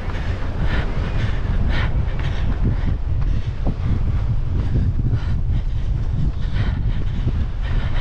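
Wind buffeting a body-worn camera microphone: a steady, flickering low rumble with irregular gusty flares about once a second.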